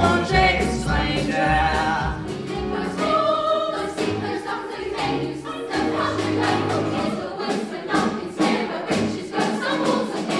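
Children's musical theatre chorus singing together, backed by a live band with drums.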